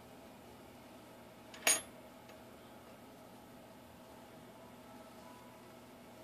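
Quiet room tone with a faint steady hum, broken by one short sharp click about a second and a half in.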